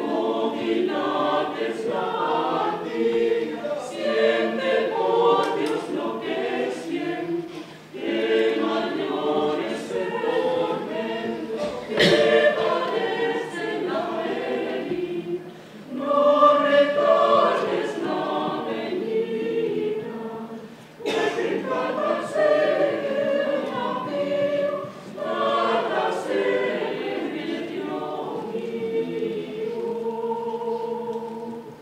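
Mixed choir of men and women singing a cappella under a conductor, in phrases broken by short pauses for breath.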